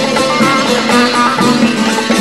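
Instrumental passage of a Turkish folk song with no singing: plucked string instruments play a quick melody, several notes a second.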